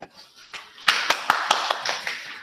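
A small group applauding: a run of quick hand claps starts about a second in.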